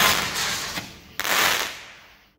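Aerial firework bursting, then a second sharp crack a little over a second in, each one fading away quickly.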